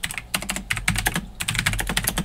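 Computer keyboard being typed on, a quick, uneven run of key clicks.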